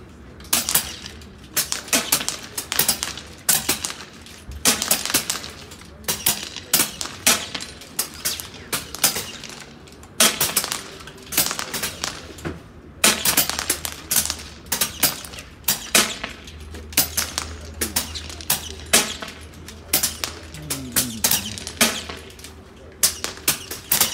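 Pre-charged pneumatic air rifles fired rapidly from several benches at once, sharp cracks in irregular volleys, several a second at times, with short lulls, mixed with the ringing pings of steel silhouette targets being hit.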